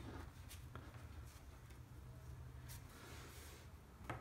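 Near silence: a faint low hum with a few soft ticks and rubs from nylon paracord being pulled tight by hand.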